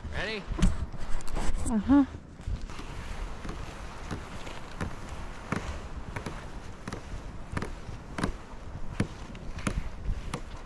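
Footsteps crunching through deep snow, even strides at about three steps every two seconds. They are preceded, in the first two seconds, by a brief wordless vocal sound that bends up and down in pitch.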